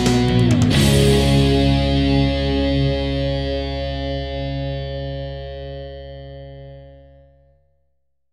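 The final chord of a song: the band's last accented hits just under a second in, then a distorted electric guitar chord left ringing, fading away over about seven seconds until it dies out.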